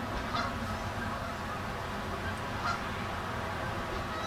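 Canada geese honking: two short honks, about half a second in and near three seconds in, over a steady low rush of background noise.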